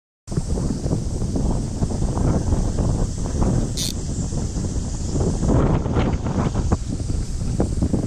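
Wind buffeting a camera microphone beside a shallow river, a dense gusty rumble that starts a moment in. A steady high hiss runs behind it and drops away about five and a half seconds in, with one brief click near the four-second mark.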